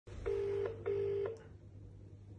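British telephone ringing tone heard by the caller: one double ring, two short low buzzing tones in quick succession, the sign that the called phone is ringing and has not yet been answered.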